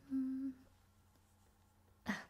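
A woman hums one short, steady note as she writes, then only a faint, steady background hum remains.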